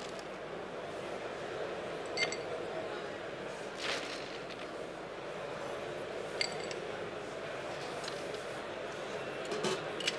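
A few scattered clinks of a cocktail shaker and glassware, several seconds apart, as the shaker is made ready before shaking, over a steady background hall noise.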